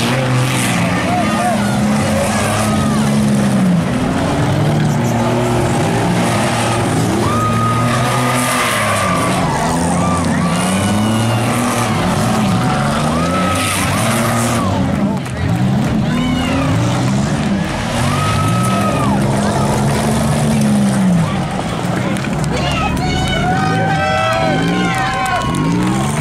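Several stock compact race cars running laps together, their engines revving up and easing off again and again as they go round the corners.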